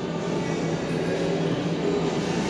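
Steady background hiss and hum of a busy house under construction, with faint voices underneath.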